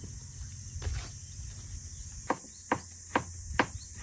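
Kitchen knife slicing an onion on a plastic cutting board, short sharp chops about two to three a second starting in the second half. A steady high insect drone runs underneath.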